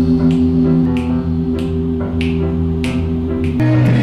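An a cappella group singing a held chord, with finger snaps keeping a steady beat about every two-thirds of a second; the chord changes shortly before the end.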